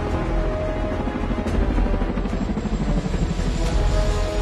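Suspenseful film score with held tones over a deep, steady low rumble, and a helicopter's rotor beating faintly underneath.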